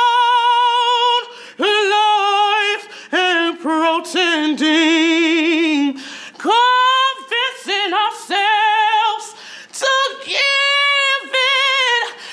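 A man singing a ballad unaccompanied in a loud, high-pitched voice, holding long notes with a wide, wavering vibrato, broken into phrases by short breaths.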